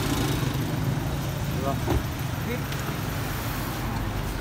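Steady low hum of an idling car engine over street traffic noise, with a few faint clicks and knocks.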